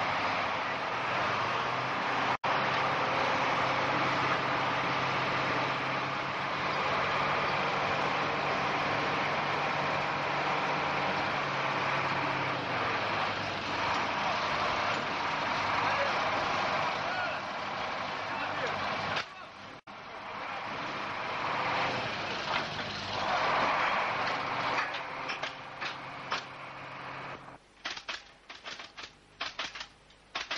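Heavy vehicle engines running steadily, mixed with indistinct voices; the sound drops out briefly twice.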